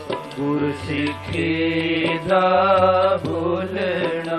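Sikh Gurbani kirtan: male voices singing a shabad in long, wavering held notes over a steady harmonium drone, with light tabla strokes.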